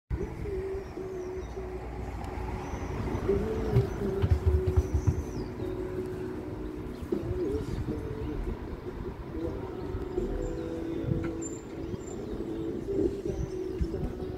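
Pigeons cooing in a low wavering tone that keeps going, with a few faint high chirps from smaller birds, over a low background rumble. There are a few low bumps about four to five seconds in.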